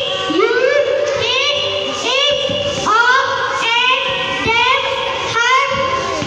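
A young girl's voice chanting in a high, sing-song tone into a handheld microphone, drawn-out syllables following one another steadily.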